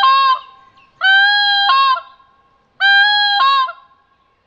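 Pinkfoot Hammer goose call, coughed into and cupped in both hands, giving the high-pitched pink-footed goose call. The tail of one call ends just at the start, then two full honks follow about two seconds apart. Each is a steady note that steps up in pitch near its end as the hands close off the airstream.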